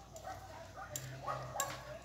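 A quiet moment with a metal fork clicking lightly against a ceramic plate, a few times. A dog whimpers faintly in the background.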